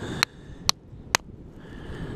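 Three sharp hammer blows on a rock concretion, about half a second apart, cracking it open.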